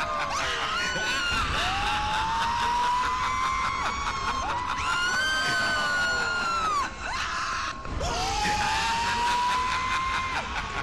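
Several voices screaming and wailing at once, overlapping long drawn-out cries that rise, hold for a second or more and break off, over a steady rushing noise.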